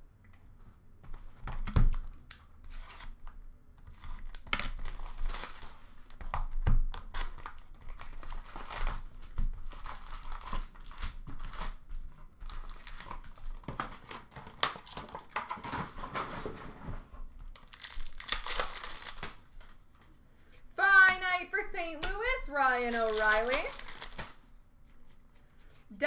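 Plastic wrapping and foil card-pack wrappers crinkling and tearing in irregular bursts, with sharp little knocks as packs are handled and opened. A voice speaks briefly near the end.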